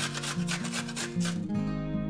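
Zucchini rasped against a coarse stainless-steel box grater in quick repeated strokes, about five a second, stopping about one and a half seconds in. Acoustic guitar background music plays underneath.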